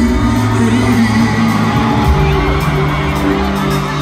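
Live pop band playing through an arena sound system, recorded from among the audience, with fans whooping and cheering over the music.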